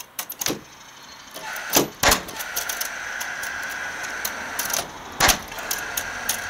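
Cordless framing nail gun driving nails into timber joists and struts: a few sharp, loud shots, two of them close together about two seconds in and another near the end, with lighter clicks and knocks between. A steady whine sounds between the shots.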